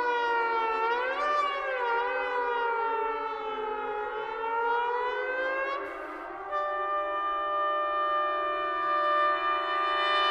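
Solo trombone and orchestra in a modernist concerto: several overlapping pitch glides sweep up and down together like sirens, then settle at about six and a half seconds into steady held notes.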